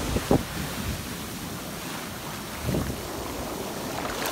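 Ocean surf washing in on a beach, a steady rush of waves and foam, with wind buffeting the microphone and two brief gusts, one just after the start and one late.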